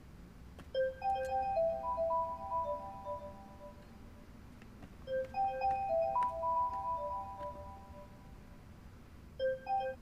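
Mobile phone ringtone for an incoming call: a short tune of clear bell-like notes that repeats about every four seconds, starting a third time near the end.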